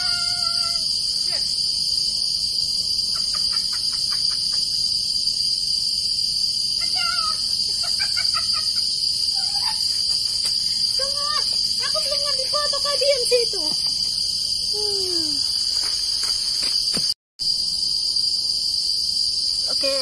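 A steady high-pitched insect chorus from the forest runs throughout. A few short pitched calls that bend in pitch break in now and then, and the sound drops out completely for a moment about 17 seconds in.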